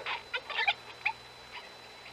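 A capuchin monkey's short, high squeaks, a few of them in the first second, then they stop.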